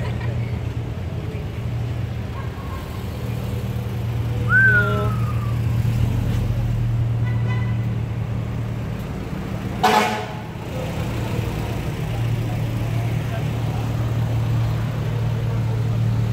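Honda Civic engines idling and creeping past at low speed, a steady low exhaust drone. A brief car-horn toot cuts in about ten seconds in, the loudest moment, and a short falling whistle-like tone comes at about four and a half seconds.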